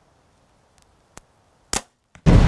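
Athens Vista 33 compound bow being shot: one loud, sharp crack of the string release near the end, after a faint click about a second in.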